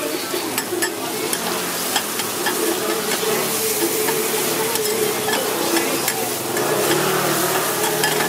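Chopped garlic, onion and red chili sizzling on a hot flat iron griddle while metal spatulas scrape and click against the iron as they toss the food, over a steady hum.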